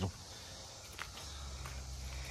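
Faint footsteps on dry leaf litter, with a small crunch about a second in and a few lighter ones near the end.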